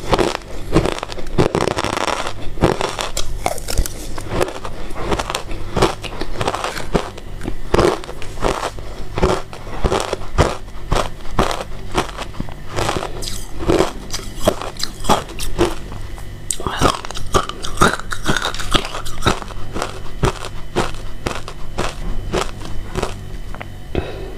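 Close-miked chewing of shaved ice: a steady run of irregular, crisp crunches as mouthfuls of ice are bitten and ground between the teeth.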